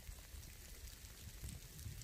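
Faint outdoor ambience in falling snow, with a low, fluttering wind rumble on the microphone.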